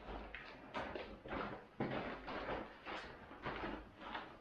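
A large woven plastic bag and its non-woven fabric lining rustling as they are handled and lifted, in a run of irregular swishes with a sharper rustle a little under two seconds in.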